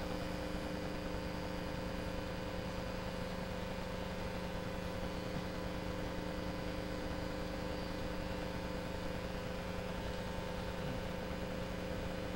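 Steady room tone: a constant electrical hum made of several unchanging low tones over an even hiss.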